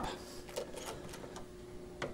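Screwdriver working a tube amplifier's mounting screw, faint small metallic clicks and scrapes as the screw is loosened a few turns.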